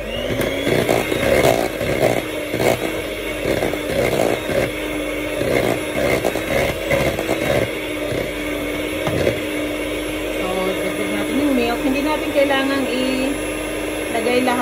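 Handheld electric mixer running steadily, its beaters churning thick, stiff cream cheese in a stainless steel bowl. The beaters knock and rattle against the bowl over the first nine seconds or so, then the mixer runs more smoothly.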